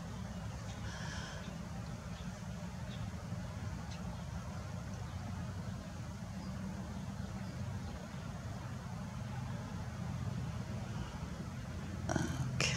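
Steady low outdoor background rumble with a faint hiss, and one or two faint brief blips near the start.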